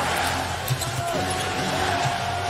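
Basketball being dribbled on a hardwood court under a steady arena crowd din. A single held tone comes in about halfway through.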